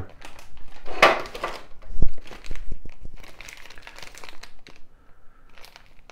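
Clear plastic parts bags crinkling and rustling as they are handled, loudest about a second in, with a single sharp thump about two seconds in and quieter rustling after.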